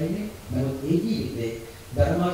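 Only speech: a man preaching in Sinhala, talking steadily into a microphone.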